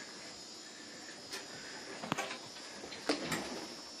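Faint steady electrical hum with a few light clicks scattered through, two of them close together near the end.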